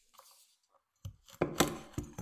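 Kitchen knife chopping whole nuts on a wooden cutting board. It is quiet for the first second, then there is a quick run of about five sharp cuts knocking through into the board.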